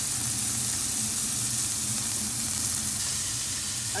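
Blended sun-dried tomato sauce sizzling steadily in hot oil in a stainless pan.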